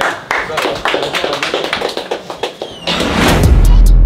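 A group clapping in quick, uneven claps, with voices, in a small room. About three seconds in, loud bass-heavy electronic music comes in.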